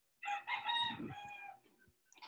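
A single long, pitched animal call lasting over a second, dipping slightly in pitch as it fades.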